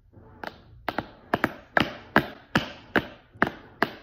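Drumstick tapping on a hard surface in a steady run of sharp knocks, about two to three a second, some struck in quick pairs.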